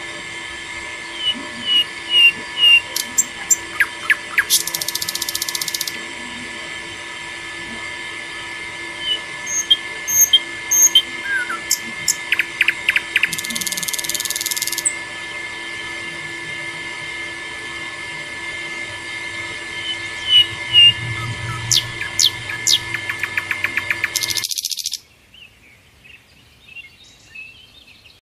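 Small battery-powered DC motor water pump running with a steady whine, with bird chirps and trills over it. The pump cuts off abruptly near the end, leaving only faint birdsong.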